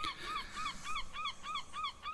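A bird calling in a rapid series of short, arched calls, about three a second, over a faint steady hiss.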